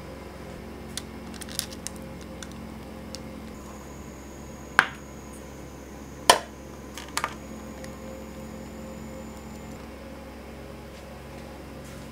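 A metal cake pan knocked down hard twice, about a second and a half apart, each a sharp clank with a short ring, followed by a quick double click, with a few light clicks before and a steady low hum throughout.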